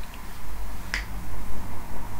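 A single sharp click about a second in, over a steady low electrical hum.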